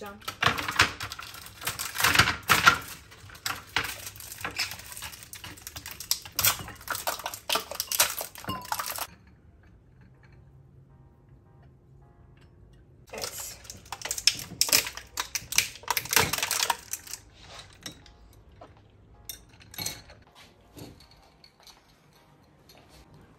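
Ice cubes clattering and clinking as they are put into a glass, for about nine seconds. After a short lull, coffee is poured from a stovetop moka pot over the ice with more clinking. A few light clinks follow near the end.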